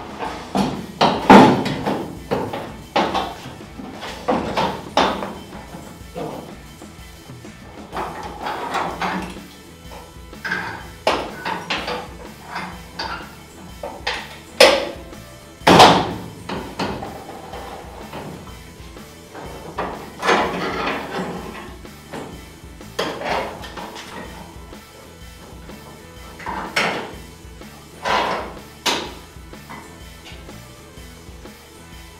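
Background rock music with irregular knocks and clanks of a sheet-metal outer rocker panel being handled and test-fitted against a car's bare body shell, the loudest knocks about a second in and near the middle.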